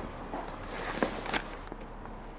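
A few soft footsteps, about four uneven steps.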